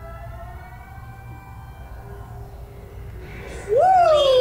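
Faint held tones, the tail of the music, fading out. About three and a half seconds in they give way to a loud, high-pitched voice squealing in rising and falling glides.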